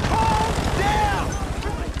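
Shouted calls, one right at the start and another about a second in, over a rapid, even low pulsing underneath.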